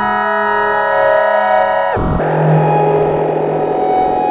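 DIN Is Noise microtonal software synthesizer played live: a bright held chord of many steady tones for about two seconds, then a quick downward swoop and a sudden change to a noisier, grainy texture over a low held note.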